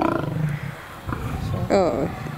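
A lioness snarling and growling with her teeth bared while a male lion mouths the back of her neck. There is a low growl about half a second in, then a short snarl near the end.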